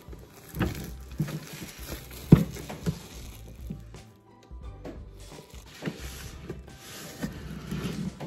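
Cellophane shrink wrap crinkling and tearing as it is pulled off a trading-card box, with handling clicks and one sharp knock about two seconds in. Music plays underneath.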